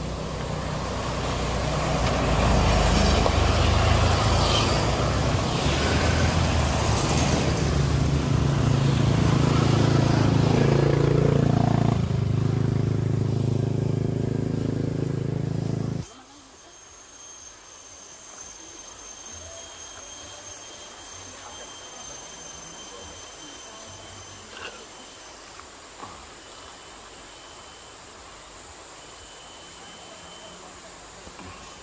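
A loud, steady low rumble like a running vehicle for about the first half. It cuts off abruptly and gives way to a quieter forest background with steady, high-pitched insect drones.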